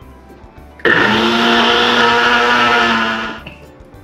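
Single-serve personal blender motor running on a thick avocado-banana pudding mix, loosened with extra coconut milk. It starts about a second in, holds a steady pitch for about two and a half seconds, then winds down near the end.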